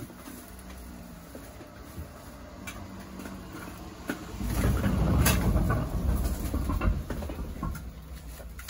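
A clear plastic garbage bag full of plastic bottles rustling and crinkling as it is handled. It is loudest for about three seconds in the second half, with a low rumble under it and one sharp click.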